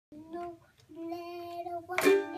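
A toddler singing: a short note, then one long held note lasting about a second.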